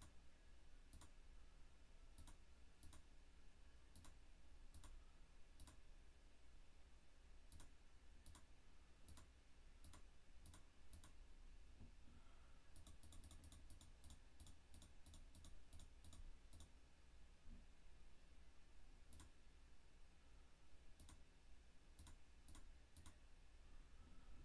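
Faint computer mouse clicks, scattered irregularly, with a quick run of clicks about thirteen seconds in, over near-silent room tone.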